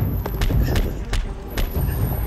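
Running footsteps on a concrete sidewalk, heard as a handful of sharp, irregular knocks, over a heavy rumble of wind and movement on the microphone.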